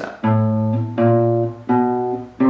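Nylon-string classical guitar playing a slow one-finger-per-fret chromatic exercise on the low sixth string: three single plucked notes, each a step higher than the last, about one every 0.7 seconds, each left to ring and fade.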